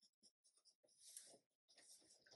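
Near silence, with faint soft rustling and a few light clicks.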